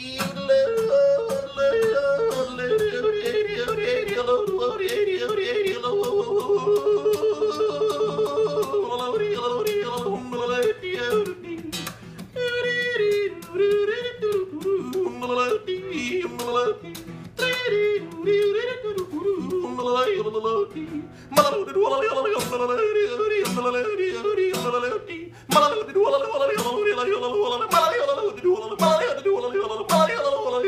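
Live yodeling: a single voice sings a melody that flips sharply between chest voice and falsetto. It is set over a steady beat of sharp, regular strokes.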